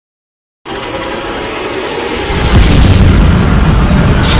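Silence, then about half a second in a loud rumbling boom sound effect begins suddenly and swells heavier and deeper partway through, running on as the logo intro's sound.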